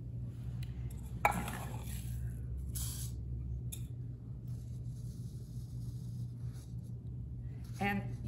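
Crushed walnut shells scooped with a small cup and poured through a plastic funnel into a fabric pincushion: a sharp clink about a second in, then short rattling pours, over a steady low hum.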